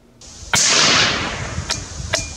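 .17 HMR rimfire rifle, a Savage 93R bolt-action, firing once: a sharp crack about half a second in, its report fading away over about a second and a half.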